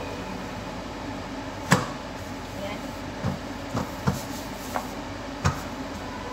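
Pizza dough being handled and rolled out with a wooden rolling pin on a board: one sharp knock about two seconds in, then several lighter knocks and taps.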